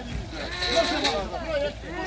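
Several people shouting a long, drawn-out "Nie!" together, their voices overlapping and wavering for about a second in the middle.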